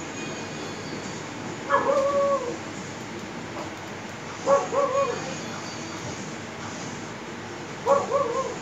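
A dog giving three short calls, each a held note that drops at the end, the second and third broken into two parts, over a steady background hum.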